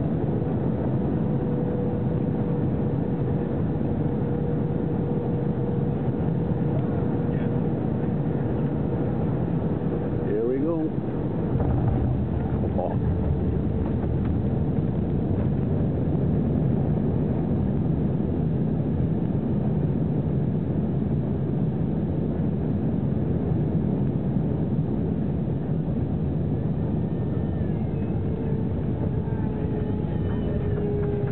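Jet airliner cabin noise during the landing roll, heard from a seat over the wing: a steady engine and runway rumble with a thin steady whine, growing slightly louder about twelve seconds in.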